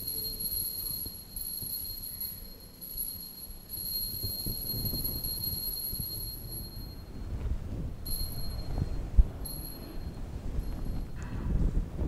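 Altar bell ringing at the elevation of the chalice: a faint, high, steady ring for about seven seconds, then two short rings a second or so apart. A soft knock comes about nine seconds in.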